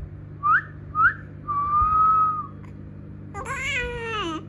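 A person whistling: two short rising whistles, then one long held note. Near the end, a baby's high vocal squeal, falling in pitch.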